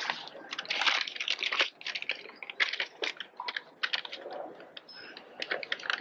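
Paper crackling and rustling as a letter and a small envelope are handled, a quick irregular run of crisp crackles.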